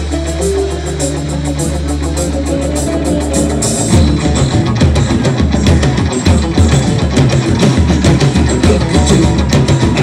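Live band playing amplified jam rock: held bass and guitar notes, then about four seconds in the full band with drums comes in and the music gets louder.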